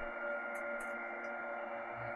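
A steady electrical hum, several fixed tones over a hiss: the running noise of a joke episode-picking machine that is 'a little bit loud'. Two faint clicks about half a second in.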